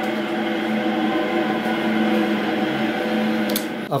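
Brushless e-bike hub motor spinning a wheel on a stand under throttle at full power, with its half-power link disconnected: a steady electric hum with several pitched tones that holds an even speed.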